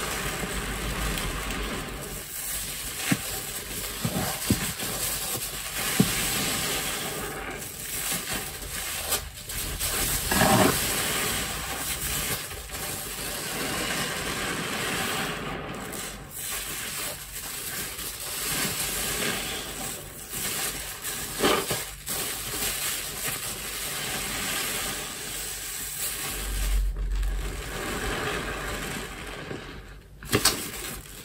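A soap-soaked grout sponge squeezed and kneaded by hand in thick dish-soap foam: continuous wet squelching and crackling of suds. A few louder squishes come about ten seconds in and again a little past twenty seconds.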